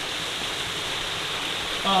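Steady rush of running water from a small waterfall and the stream below it.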